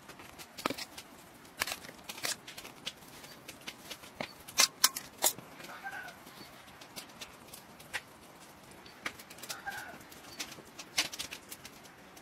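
Irregular light clicks and knocks of a wooden spoon and containers against a metal tray as spices are taken up and added to raw ground meat, with a louder cluster of knocks around the middle. Two faint, short bird calls are heard, one just after the knocks and one near the end.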